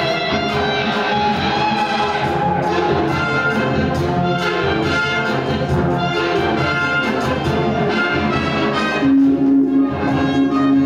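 Live rock-orchestral music: a Stratocaster-style electric guitar playing with a full orchestra and brass section over a steady beat. A loud held low note comes in about nine seconds in.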